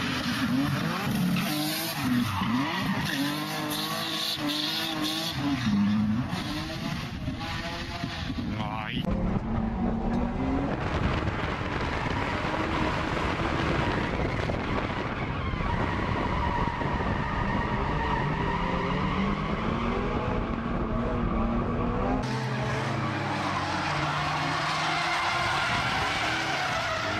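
Drift cars sliding through corners: engines revving up and down under throttle with tyres squealing and skidding, across several cut-together clips that change abruptly about 9 and 22 seconds in.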